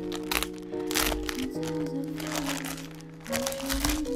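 Plastic poly mailer bag crinkling in several short bursts as it is handled and pulled open, over background music with held tones.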